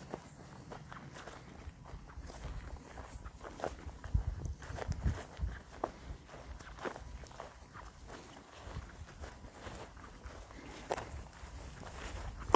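Footsteps through dense bracken ferns and grass, irregular steps with the rustle and snap of stems underfoot.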